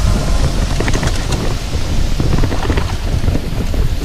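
Mountain bike rolling fast down a dirt and rock trail: a heavy low rumble of wind buffeting the microphone, with tyre crunch and dense rattling and knocking of the bike over the rough ground.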